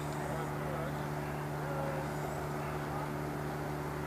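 A steady low hum at one unchanging pitch, with faint distant voices behind it.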